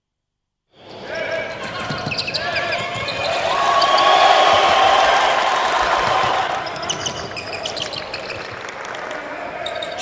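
Basketball game sound in an arena, starting about a second in: crowd noise that swells to a peak midway and eases off, with the ball bouncing and sneakers squeaking on the court.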